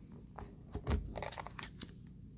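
Plastic pocket page of a ring binder being turned: a run of crinkling crackles from the flexing plastic, with a low thump about a second in as the page swings over.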